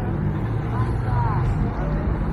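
Road traffic: vehicles running with a low, steady hum, with passers-by talking over it.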